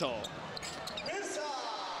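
Basketball arena ambience at low level: crowd murmur and court noise, with a faint voice a little before halfway.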